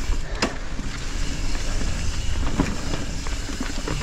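Mountain bike descending fast on a pine-needle-covered dirt trail: wind rushing over the microphone and tyres rolling on dirt, with scattered clicks and rattles from the bike over bumps and one sharper knock about half a second in.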